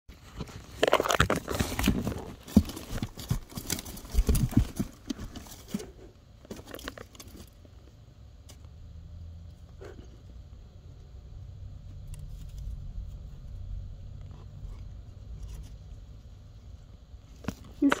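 Crinkling and rustling of paper, cardboard and shiny wrapping as a cat moves about inside a cardboard box fort, busy for the first six seconds or so, then dying away to a few soft ticks.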